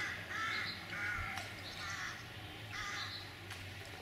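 Crow cawing, about four calls roughly a second apart.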